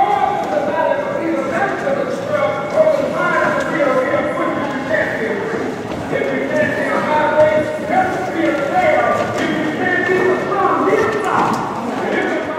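A crowd of young people talking at once in a large church sanctuary, many overlapping voices with no single speaker standing out, along with footsteps on the floor.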